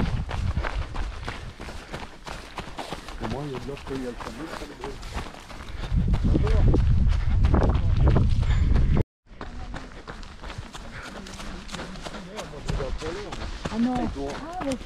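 A runner's footsteps on a dirt path, a steady quick patter of strides, over a low rumble that grows loudest from about six to nine seconds in. Faint voices of people nearby are heard at times, and the sound cuts out completely for a moment about nine seconds in.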